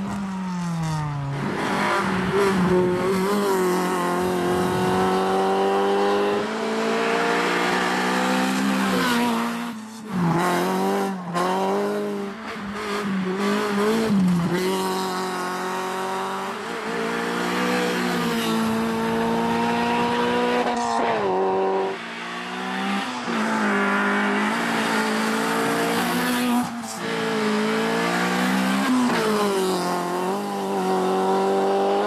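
Honda Civic VTi rally car's 1.6-litre VTEC four-cylinder engine revving hard on a stage, its pitch repeatedly climbing and dropping with gear changes and lifts, over several passes.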